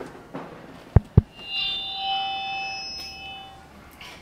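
Two quick knocks on a vintage stage microphone, about a fifth of a second apart. Then a steady ringing tone of several pitches holds for about two seconds and fades.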